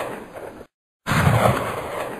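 Gunshot sound effect played twice, identically: a loud, sudden blast whose tail dies away and is cut off, then the same shot again about a second in, still fading at the end.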